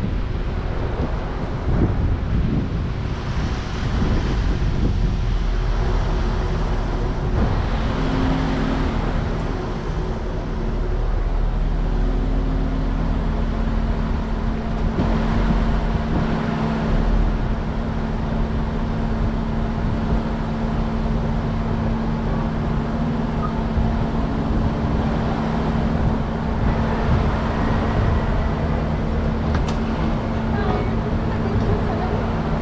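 Car running at idle: a continuous low rumble, joined about eight seconds in by a steady hum.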